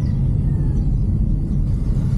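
Inside the cabin of a moving Suzuki S-Presso: a steady low rumble from its small three-cylinder engine and the road.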